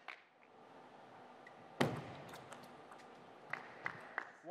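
Table tennis ball in a rally: sharp clicks of the celluloid ball off rubber bats and the table top. The loudest comes about two seconds in, and a run of lighter clicks at uneven spacing follows toward the end.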